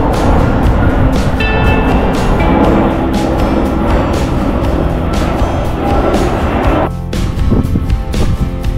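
Background music over the loud roar of a large jet aircraft flying low overhead. The roar cuts off suddenly about seven seconds in, leaving the music.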